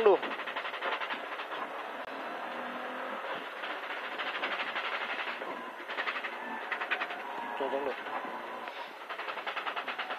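A rally car's engine and drivetrain, heard from inside its stripped, caged cabin while it races up a hillclimb. The noise is steady, with stretches of rapid rhythmic pulsing as the engine is worked hard.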